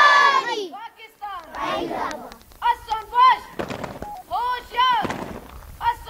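A schoolboy singing at full shout, holding a loud, strained note that breaks off about a second in, then several short shouted phrases that rise and fall in pitch, with a couple of brief knocks between them.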